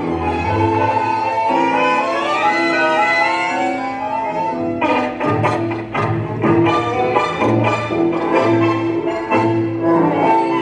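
Tango music from an orchestra, with bowed strings to the fore. It opens with a smooth, sustained melody that climbs in a run, then switches about halfway to short, clipped notes in a marked rhythm.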